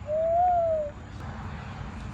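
A bird call: one clear whistled note, under a second long, rising slightly and then falling.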